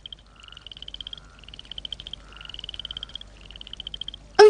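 Night-time animal chorus: short, rapidly pulsed trills repeating about once a second, four in all, with a fainter lower call beneath some of them.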